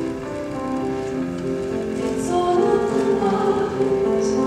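Slow music with long held notes, growing louder about halfway through.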